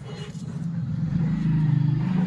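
A motor vehicle engine running steadily, getting louder from about a second in.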